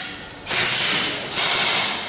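M4-style airsoft rifle firing two rapid bursts on full auto, one about half a second in and another just before the end. The gun is shooting its magazine empty.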